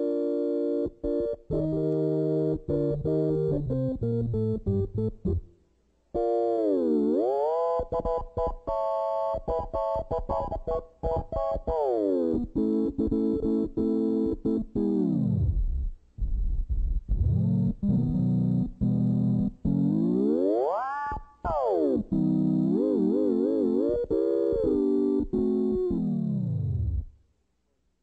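Moog modular synthesizer prototype played as a demonstration. It gives electronic tones stepping through short runs of notes, with several pitch glides down and one sweep up, a fast vibrato wobble near the end, and notes breaking off briefly twice.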